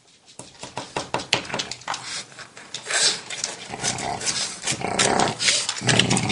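A pug's quick, noisy breathing and snuffling close to the microphone, starting just after a click and growing louder.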